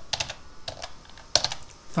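Computer keyboard keys clicking as a word is typed: an uneven run of quick keystrokes, the loudest a little over a second in.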